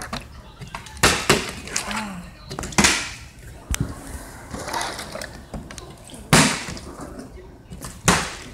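A partly filled plastic water bottle flipped and landing on a tile floor: several sharp knocks and clatters as it hits and tumbles, the loudest about six seconds in.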